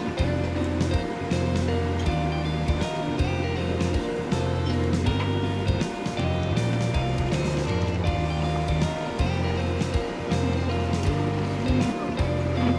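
Background music with a steady beat, a bass line and a melody.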